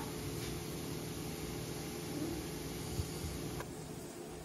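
Steady low hum and hiss of kitchen room tone, with one faint knock about three seconds in. The high hiss drops away abruptly near the end.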